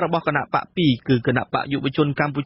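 Speech only: a radio news reader talking steadily in Khmer.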